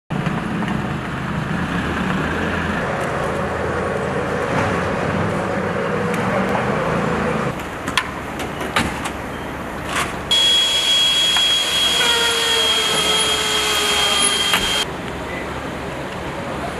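Fire vehicles' engines running as they drive slowly by, then a few sharp knocks and clicks. From about ten seconds in, a louder rushing noise with a steady high whine lasts about four and a half seconds and cuts off suddenly.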